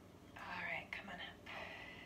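Soft, breathy whispered sounds from a woman close to a headset microphone, in three short spans without clear voicing.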